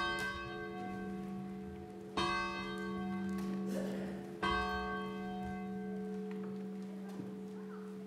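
Church bell struck three times, about two seconds apart, each strike ringing on slowly into the next over a steady low hum.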